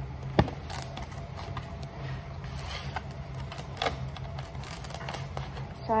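Plastic wrap being pulled and torn from its cardboard box: scattered light clicks and crinkles, with one sharp click about half a second in, over a faint steady low hum.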